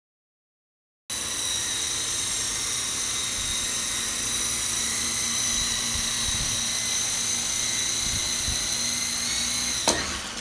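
Electric motor and rotor blades of a small indoor remote-controlled toy helicopter in flight: a steady high-pitched whine that starts about a second in. Near the end a sharp knock as the helicopter comes down on the sofa, and the whine drops away.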